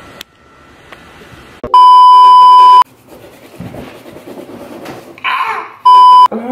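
Loud, steady electronic beep tone, edited into the soundtrack. It starts a little under two seconds in and lasts about a second. A second short beep comes at the very end, as TV colour-bar static appears.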